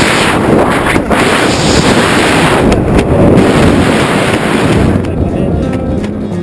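Loud wind rushing over the camera microphone during a skydive. About five seconds in it fades and guitar music comes in.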